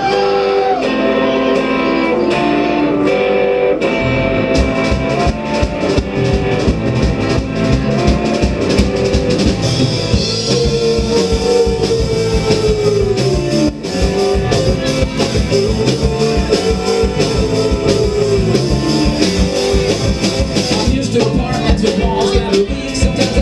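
Live rock band playing a song's instrumental opening: guitar alone at first, then drums and bass come in about four seconds in with a steady beat. A long falling, gliding note sounds twice over the band.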